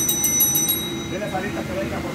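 Countertop service bell rung in a rapid series of dings, the order-up signal that the dishes are ready for the server. The ringing stops just under a second in, leaving kitchen background noise and faint voices.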